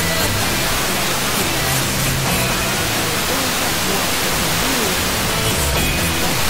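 Music from a distant FM broadcast station received over Sporadic E skip, buried in heavy radio hiss. The signal fades, so the music sinks almost into the static through most of the stretch and comes back more clearly near the end.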